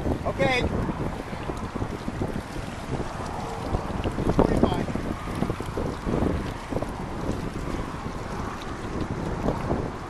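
Wind buffeting the microphone, a dense, uneven rumbling noise, over the sound of water in a fish hatchery raceway.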